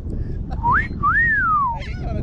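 A two-part whistle: a short rising note, then a longer note that rises and glides slowly down, like a wolf whistle, over low wind rumble on the microphone.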